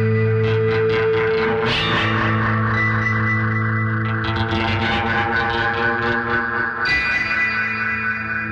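Electric cigar box guitar played through effects: low notes held in a steady drone under picked notes, with a change of notes about two seconds in and again near the end.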